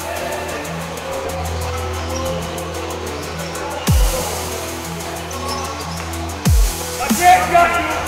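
Electronic dance music in a dubstep style: a steady deep bass line with fast hi-hat ticks, and a deep falling bass drop about every two and a half seconds.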